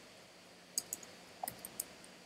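Faint typing on a computer keyboard: a handful of separate key clicks, about five, in the second half.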